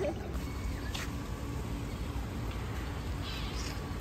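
Swimming-pool water lapping and trickling lightly around feet dangled in it, over a low steady rumble, with a brief click about a second in.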